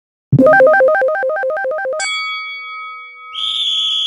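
Electronic keyboard sound effect: a fast back-and-forth run of alternating high notes lasting about a second and a half, then a held ringing chord, with a short hissy sparkle over it near the end.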